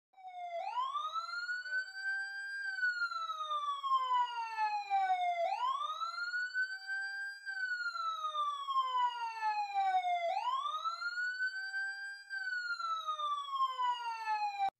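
A siren wailing three times, each wail rising over about two seconds and then falling slowly for about three, about every five seconds.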